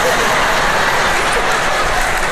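Theatre audience laughing and clapping, a dense steady crowd noise that follows a punchline.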